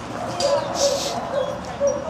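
Adult female Boxer barking in a string of short, repeated barks, about four or five in two seconds. Her handler takes it as attention-seeking, set off by an unfamiliar dog getting attention.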